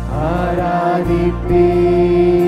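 Mixed group of men and women singing a Tamil worship song together over a steady low accompaniment, the voices gliding up into a long held note.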